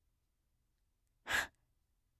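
A woman's single short, audible breath, a quick sigh or intake, about a second and a quarter in, after near silence.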